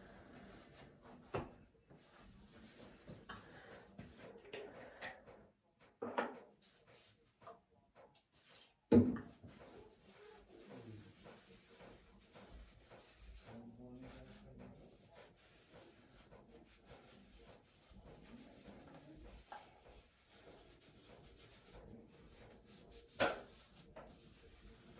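A makeup-remover wipe rubbing over a face, soft and quiet, with a few short knocks, the loudest about nine seconds in.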